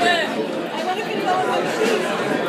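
Voices talking and chattering in a live music club, several overlapping, with no music playing.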